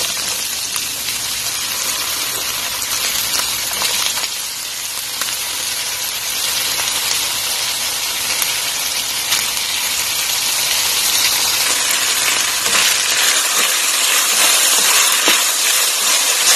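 Ground pork, onion, garlic and freshly added diced potato sizzling in oil in a frying pan, stirred with a plastic spatula that scrapes lightly now and then. The sizzle is steady and grows a little louder toward the end.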